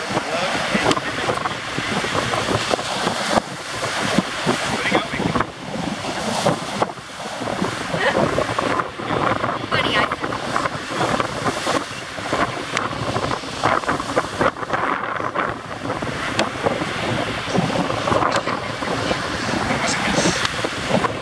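Strong wind buffeting the microphone over the steady wash of breaking surf, gusting unevenly throughout.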